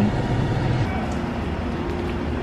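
Steady low road rumble inside a moving car's cabin, easing off about a second in.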